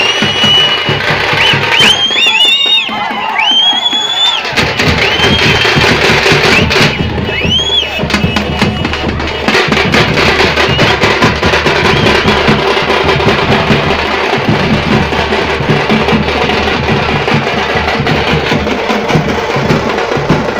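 Procession drums beating a fast, steady rhythm, with shrill whistles rising and holding over the drumming several times in the first eight seconds.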